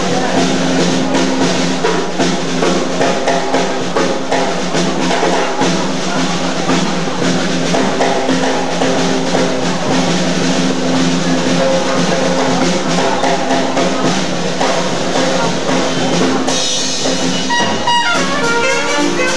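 Live traditional jazz band with the drum kit to the fore, snare and bass drum strokes running over steady lower accompaniment. About sixteen seconds in the sound brightens as the saxophone and the other horns come back in.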